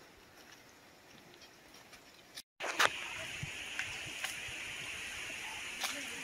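Footsteps on a dry, leaf-littered dirt trail: faint at first, then, after a brief dropout about halfway through, louder over a steady high hiss, with a few short crunching steps.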